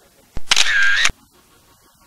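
Camera shutter sound effect: a sharp click, then a loud burst of about two-thirds of a second with a wavering tone, cut off suddenly.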